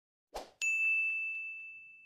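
Animated like-and-subscribe graphic's sound effect: a short whoosh, then a bright bell-like ding about half a second in that rings out and fades over about a second and a half.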